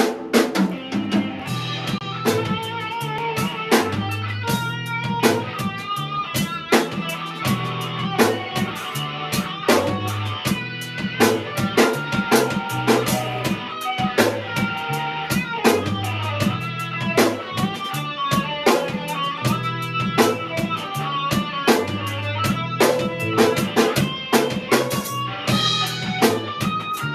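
Instrumental math/post-rock played live by a three-piece band: drum kit, electric bass and electric guitar, with busy drumming over a repeating bass line and picked guitar notes.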